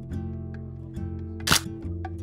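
Hasselblad 500CM medium-format film camera firing once: a single sharp shutter-and-mirror clack about one and a half seconds in, over background acoustic guitar music.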